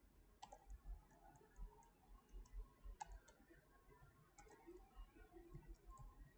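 Faint, irregular clicking of a computer keyboard and mouse while text is edited, over near silence.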